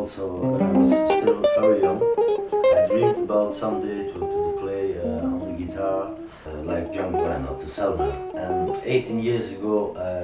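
Gypsy jazz acoustic guitar music: a quick picked melody of many short notes over a low accompaniment.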